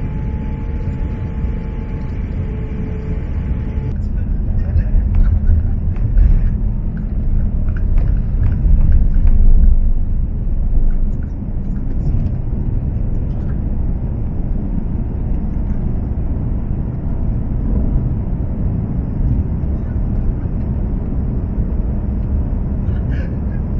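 Airbus A350 jet engines (Rolls-Royce Trent XWB) at takeoff power, heard from inside the cabin. The noise builds about four seconds in, with a heavy rumble and bumps from the wheels on the runway during the takeoff roll, then drops suddenly a little after ten seconds as the plane lifts off. A steady engine noise continues through the climb.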